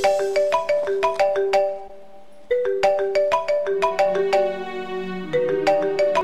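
Mobile phone ringing with a marimba-style ringtone: a short melody of struck notes, played three times with brief gaps between.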